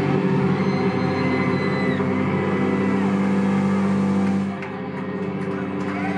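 A heavy rock band's distorted electric guitars and bass hold a sustained droning chord that rings on steadily, then drops in level about four and a half seconds in as the song closes.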